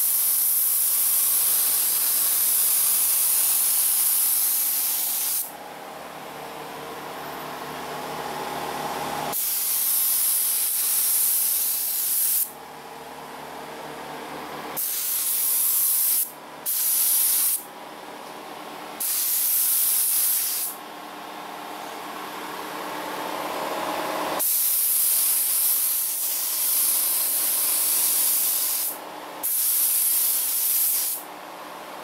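Gravity-feed spray gun spraying primer, a loud hiss of air in repeated passes that start and cut off sharply as the trigger is pulled and released, about seven in all. A lower, quieter hum fills the gaps between passes.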